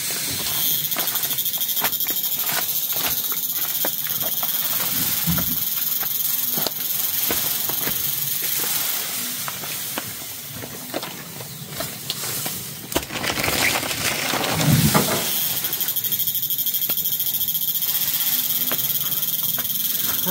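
A steady high insect drone that breaks off about nine seconds in and starts again about six seconds later, over scattered rustles and light knocks from dry thatch bundles being handled and carried.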